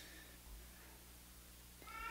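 Near silence: room tone with a low steady hum, and a faint high tone near the start and again just before the end.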